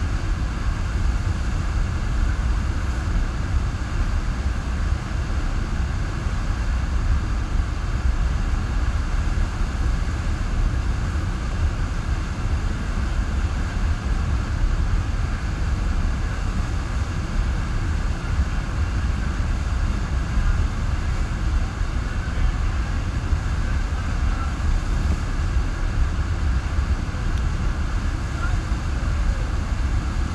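A sheet of water rushing up a FlowRider FlowBarrel wave machine, heard close to the water: a steady, loud rush with a deep rumble underneath.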